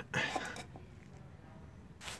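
A man's voice ends a word, then only faint, steady background noise, with one short knock right at the end. No ratchet clicking is heard.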